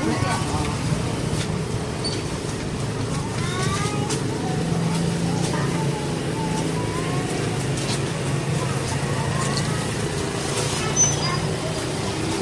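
Street-market ambience: voices talking in the background over a steady low hum, with a brief click near the end.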